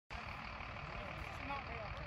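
Outdoor field ambience: a steady low rumble with faint, distant chatter of people.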